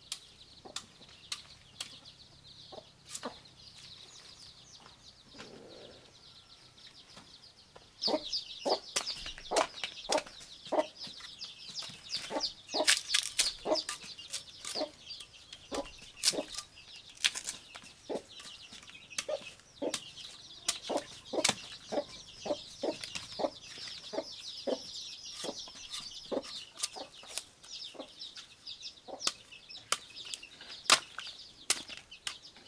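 A machete chopping and slicing into fresh bamboo shoots, trimming off the husks and base in quick, irregular strokes. The cuts come as sharp clicks and knocks, faint at first and much louder and closer from about eight seconds in.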